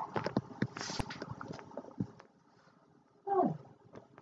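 A girl's voice making short non-word noises and clicks, then a pause and one short vocal sound that slides down in pitch.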